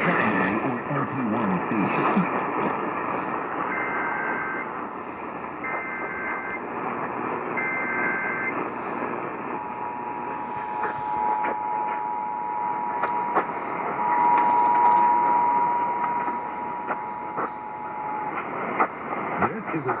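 Emergency Alert System Required Monthly Test received on an AM radio. It opens with three short bursts of the screeching digital SAME header about two seconds apart. Then the steady two-tone attention signal holds for about nine seconds and stops a little before the end, all over a constant hiss of AM static.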